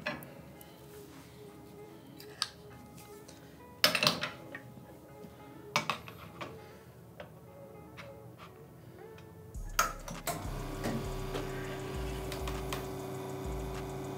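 A few clinks and knocks as a portafilter is locked into a Rocket espresso machine and a ceramic cup is set on the drip tray, then, about ten seconds in, the machine's pump starts and runs with a steady hum as the espresso shot begins to pull.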